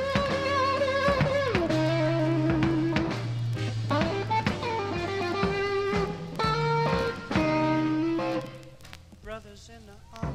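Live electric blues band playing a slow blues: an electric lead guitar holds long bent notes with vibrato over bass and drums. The playing drops to a quieter passage near the end.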